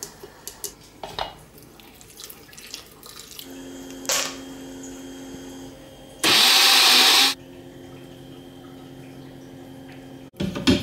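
Protein shake being made in a glass countertop blender jug: light clicks and knocks as powder, milk, banana and ice go in. A low steady hum starts about three and a half seconds in, and a loud rushing noise runs for about a second, six seconds in, starting and stopping abruptly.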